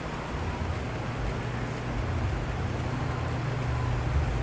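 Steady background noise with a low, even hum and no distinct events: room tone.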